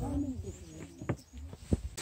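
Faint, distant voices of people talking, with a few sharp knocks from footsteps on wooden deck stairs, the clearest about a second in and near the end.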